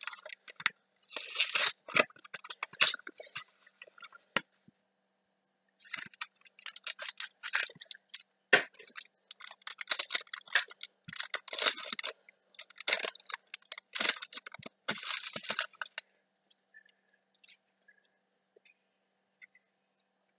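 Foil wrapper of a Yu-Gi-Oh! Extreme Force booster pack crinkling and tearing as it is opened by hand, in bursts of rustling with a short pause, stopping about four seconds before the end, where only a few faint ticks remain.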